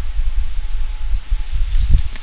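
Uneven low rumble of microphone noise, with a faint steady high hum under it.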